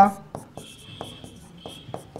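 Pen writing on the glass screen of an interactive whiteboard: light taps of the tip at the strokes, with a thin, steady high squeak through the middle.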